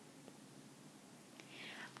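Near silence: faint room tone, with a soft breath drawn in near the end.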